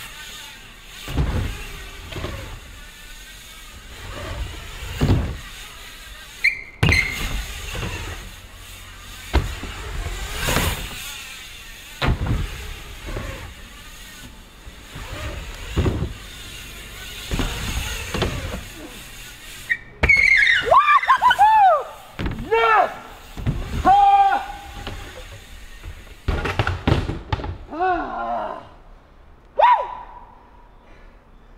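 BMX bike riding wooden ramps: tyres rolling on the plywood with repeated sharp thuds of landings and knocks. In the last third comes a run of short, high squeals.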